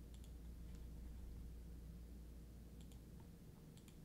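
Several faint computer mouse clicks, two close together near the end, over a low steady hum.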